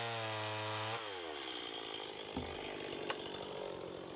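Two-stroke gas chainsaw idling steadily, then shut off about a second in, its engine note falling away to a stop.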